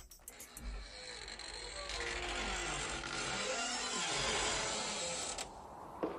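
A long, slow creak with falling pitch over a steady hiss, like a door-creak sound effect opening a song. The hiss drops away near the end.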